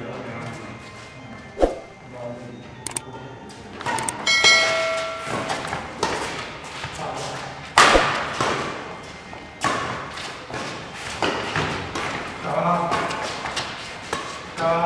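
Badminton doubles rally: sharp racket strikes on the shuttlecock mixed with players' shoes thudding and scuffing on the concrete court. The loudest hit comes about eight seconds in.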